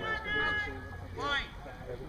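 High-pitched shouting voices: one long call, then a short shout about a second later, over low outdoor rumble.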